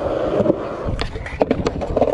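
Skateboard wheels rolling over concrete, followed by a few sharp clacks of the board about a second in.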